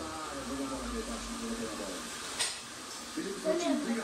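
Indistinct voices speaking, with a single sharp click a little over two seconds in.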